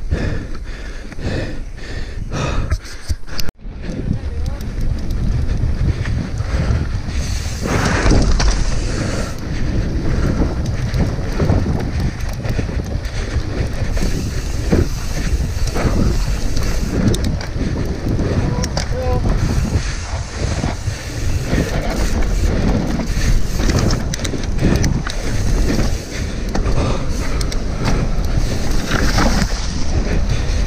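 Wind rushing over a helmet camera's microphone as a mountain bike descends a rough dirt trail, with a constant clatter of chain, suspension and tyres over bumps. The sound drops out briefly about three and a half seconds in.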